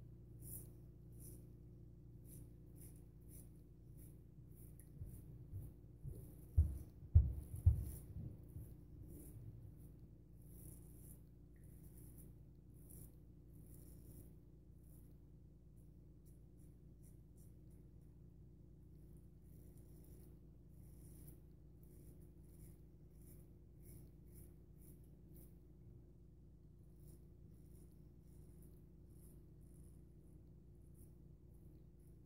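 Short, crisp scraping strokes of a Parker SRB shavette's half blade cutting stubble under shaving lather, coming in runs of quick strokes. Between about six and eight seconds in there are a few loud low thumps.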